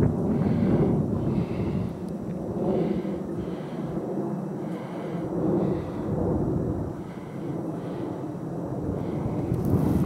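Wind rumbling on the microphone, with dogs baying in the distance on a rabbit's track, a call about every second.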